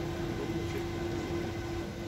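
A steady mechanical hum: one constant tone over a low rumble, like an engine idling.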